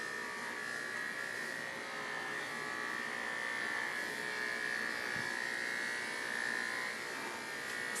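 Handheld electric dog clippers running with a steady buzz as they clip the fur on a miniature schnauzer's head.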